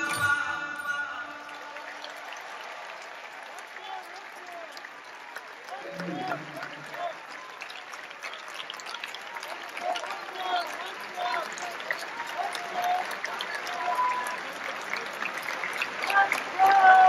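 Audience applauding as the music ends about a second in, with people's voices talking over the clapping, louder near the end.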